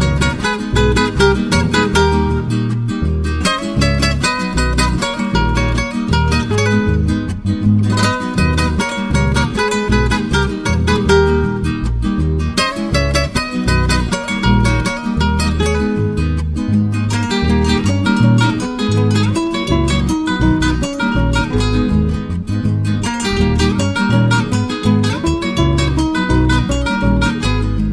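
Two acoustic guitars playing an instrumental huayno passage in Ayacucho style, with no singing: a plucked melody over a moving bass line.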